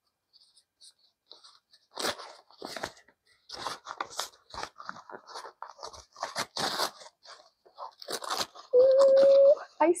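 Paper packing wrap crinkling and tearing as it is pulled open by hand, in a run of short irregular crackles. Near the end comes a brief held hummed note.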